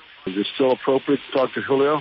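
A person speaking, with a thin, dull sound cut off above about 4 kHz, like an archived radio or phone recording.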